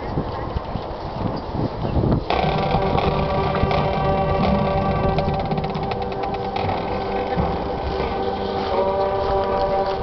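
Marching band starting its show about two seconds in: held, sustained chords over quick percussion ticks, after a stretch of crowd and open-air noise.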